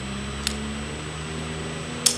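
A low steady hum that fades slowly, with one sharp small click about half a second in.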